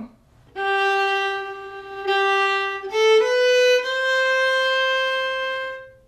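Solo violin, bowed slowly: a long G on the D string, played twice, then rising step by step to a long held higher note.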